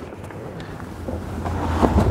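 Wind buffeting the microphone: a low rumble with a faint rustle, growing louder in the second half.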